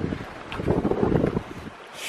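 Wind buffeting the microphone: an uneven low rumble that swells about half a second in and eases off near the end.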